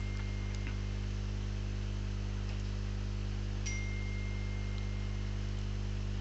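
Steady electrical mains hum, a low buzz with many even overtones. A faint thin high tone fades out just after the start, and another begins with a soft click about three and a half seconds in and holds for about a second and a half.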